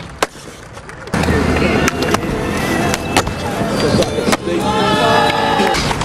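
Skateboard on concrete: a sharp clack just after the start, then the wheels rolling loudly from about a second in, with scattered clacks and knocks of the board and trucks.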